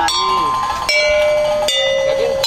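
Gamelan saron, its metal bars struck one at a time with a wooden mallet: three ringing notes about a second apart, each lower than the last and left to ring on until the next.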